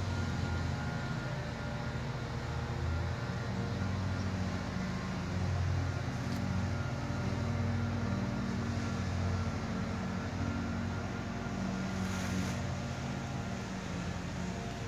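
Wind buffeting the microphone: a steady, unevenly pulsing low rumble, with a brief louder hiss about twelve seconds in.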